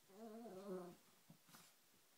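A small shorkie (Shih Tzu–Yorkie mix) dog giving a faint, wavering grumbling whine lasting under a second, the grumpy noise of a dog annoyed at having just been bathed.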